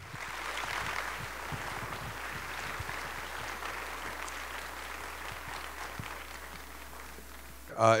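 Audience applauding steadily, tapering off slightly, over a low electrical hum. A man's voice starts just at the end.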